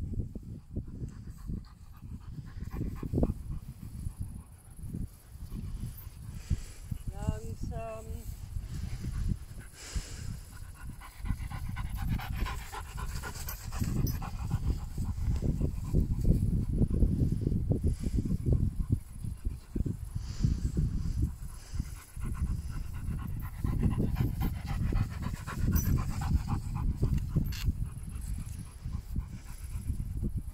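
A German Shepherd-type dog panting while it walks on the lead, over a loud, uneven low rumble.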